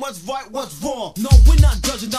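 Old-school Christian hip-hop: a rapped vocal over a beat, with a deep bass hit a little after the first second.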